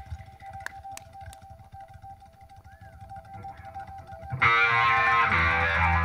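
Live prog-rock band: a soft held two-note tone for about four seconds, with three faint clicks about a second in, then the full band comes in loud on a chord of organ, synthesizer, electric guitar and bass guitar.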